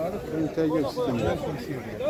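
Several people talking at once: background chatter of voices.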